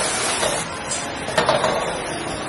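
Stir-fry sizzling and hissing in a wok over a roaring gas wok burner as the chef flames and tosses it, with metal clatter and scraping from the pan and utensils. A sharper clatter comes about a second and a half in.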